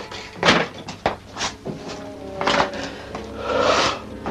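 Background film score with sustained held notes, with several thuds and knocks over it. The loudest knock comes about half a second in, and a noisy swell rises near the end.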